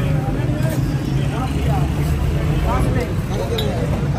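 Busy street-stall ambience: several people talking at once over a steady low rumble of road traffic.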